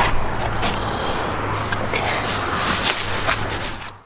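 Camera handling noise: fabric rubbing and brushing over the microphone with scattered knocks and clicks, over a steady low hum, fading out at the end.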